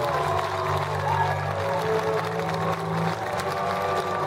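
A live band's sustained outro: held, droning low notes that step in pitch, with sliding higher notes above. Audience applause and cheering run underneath.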